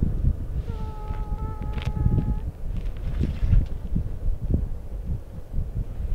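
Wind buffeting the microphone in gusts, with a steady hum from about a second in that lasts under two seconds.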